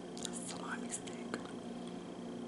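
Soft whispering close to the microphone, with a few short clicks in the first second and a half, over a steady faint hum.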